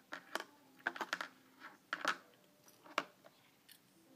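Handling noise: irregular small clicks and taps of a plastic S-clip and pencils being worked with the fingers while the clip is fixed onto rubber-band loops.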